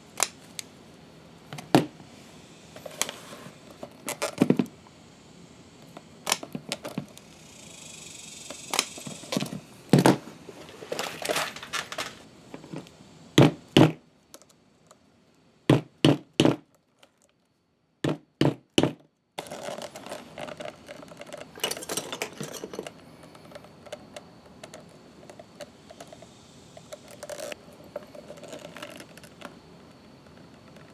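Scattered sharp clicks and knocks from leatherworking hand tools: a rotary leather punch being handled and squeezed on a leather strap, and small metal fittings being handled, over a faint steady hiss. A few seconds past the middle the background drops to dead silence between a handful of clicks.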